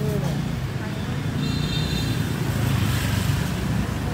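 Street traffic: a steady low rumble of motorbike and car engines going past, with a voice trailing off at the very start.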